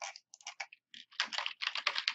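Typing on a computer keyboard: a run of separate keystrokes entering a short command, sparse at first and coming faster from about a second in.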